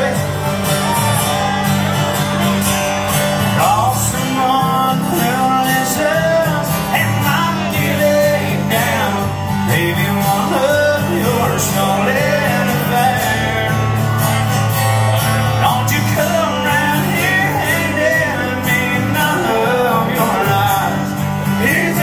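Live country band playing a 90s country song: a sung male vocal over acoustic guitar, electric bass, drums and steel guitar.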